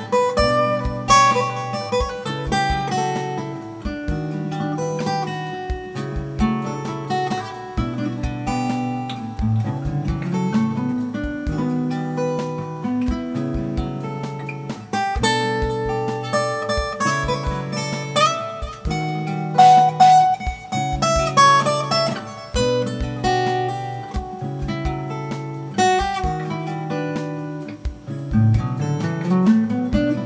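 Background music: acoustic guitar picking over a low line that repeats every couple of seconds.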